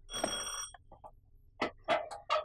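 A doorbell rings once, briefly, with a bright high tone: someone at the gate is calling to be let in. A couple of sharp knocks follow near the end as the metal gate is opened.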